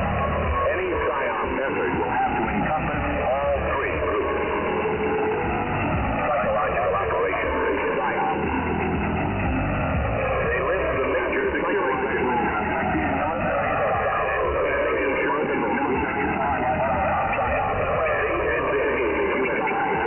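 Shortwave radio reception in upper sideband: a steady hiss-laden signal whose tone is repeatedly hollowed by selective fading, dark notches sweeping down in pitch through the audio about every two seconds.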